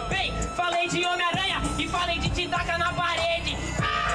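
An MC freestyle rapping into a handheld microphone over a hip-hop beat, the voice fast and continuous.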